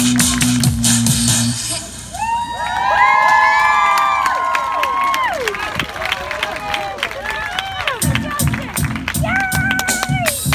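Audience cheering and whooping with clapping as a song's backing music ends. About eight seconds in, new music with a steady low beat starts.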